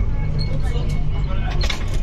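Steady low rumble of the Changi Airport Skytrain, a rubber-tyred automated people mover, running along its guideway as it pulls into a station, with a brief rattle near the end.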